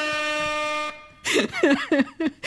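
Air horn sound effect played from a sound-effects device: one steady blast that settles slightly down in pitch at its onset and cuts off abruptly about a second in. A voice follows near the end.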